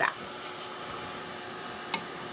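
Handheld electric craft heat tool blowing steadily, heat-setting wet ink and glaze on a wooden tag. A brief click comes just before the end.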